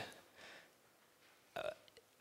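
A pause in a man's speech: a faint breath in the first half second, then near silence, then a short throaty vocal sound about one and a half seconds in.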